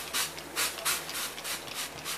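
Hand pump spray bottle spritzing water in quick repeated squirts, about three a second, onto a hot freshly soldered metal fuel font that is still steaming.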